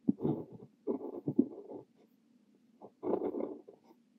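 Extra-fine nib of a Kaweco Liliput brass fountain pen scratching across notebook paper while writing Korean characters: clusters of short pen strokes, with a pause of about a second near the middle.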